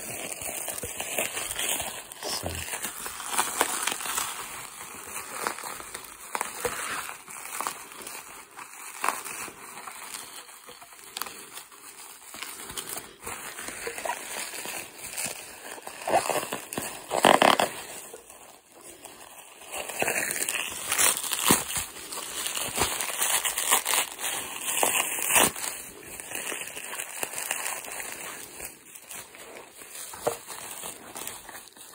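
Plastic bubble wrap being crumpled and pulled off a package by hand: continuous irregular crinkling and rustling, with a few louder crackles partway through.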